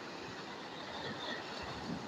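Steady wash of sea surf breaking on rocks, an even rushing noise with no distinct events.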